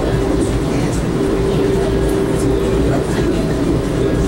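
Ride noise inside a 1982 Comet IIM passenger coach at speed: a steady rumble of wheels on rail, with a steady droning tone through the middle.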